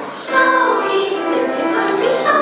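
Schoolgirls' vocal ensemble singing together. There is a short dip at the start, then the next phrase comes in about a third of a second in.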